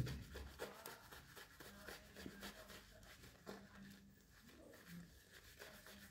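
Near silence with very faint, soft rubbing and a few light ticks of a shaving brush working shaving-soap lather.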